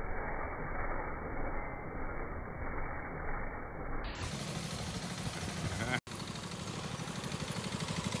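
Engine of a custom chopper trike running with a regular low putter, heard through a muffled, low-quality recording. The sound changes abruptly about halfway through and drops out for an instant just after that, where the footage is cut. The engine grows louder near the end.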